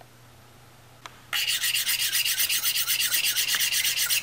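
A loud, fast rhythmic rasping rub, about eight strokes a second, starting about a second and a half in.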